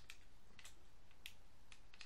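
Several faint, irregular clicks of plastic parts on a transforming robot figure being handled and folded into place.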